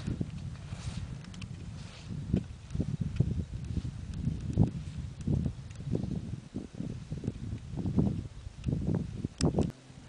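Skis running through snow with wind buffeting the microphone, a skier on the move downhill: an uneven low rumble with irregular thumps from the turns. A couple of sharp clicks come near the end before the sound cuts off suddenly.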